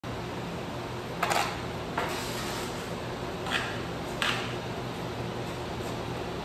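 Steady hum of a shop fan or air-conditioning unit, with four short scuffs or knocks on the concrete floor, the first the loudest.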